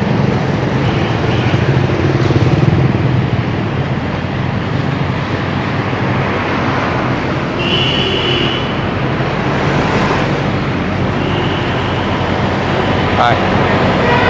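Night road traffic: a steady hum of motorbike and lorry engines over road noise, strongest in the first few seconds. A short high-pitched tone sounds about eight seconds in.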